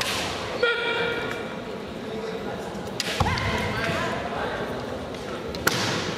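Kendo fighters' kiai shouts: a long yell about a second in and another, rising in pitch, about three seconds in. Sharp cracks come about three seconds in and again near the end, from bamboo shinai strikes and stamping feet on the wooden floor.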